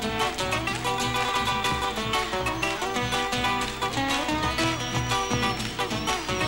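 Guitars playing an instrumental passage of an Argentine folk song between sung verses, in a quick, steady rhythm.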